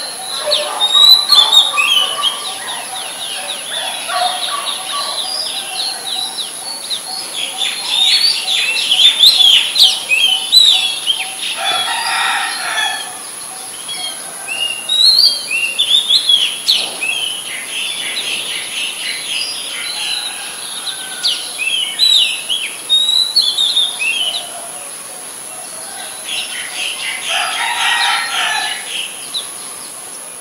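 Oriental magpie robin singing: a run of varied, clear whistled phrases that change pitch quickly, in bursts with short pauses. Twice, about twelve seconds in and near the end, a longer, lower call with a fuller sound cuts in.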